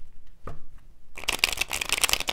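Tarot cards being shuffled by hand: a short rustle about half a second in, then a fast, dense run of card flicks from just past one second in.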